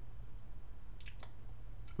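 A few faint lip smacks and mouth clicks as a man tastes a sip of coffee, over a low steady hum.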